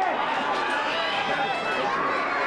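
Crowd of spectators shouting and talking at once: many overlapping voices, steady throughout, with no single speaker standing out.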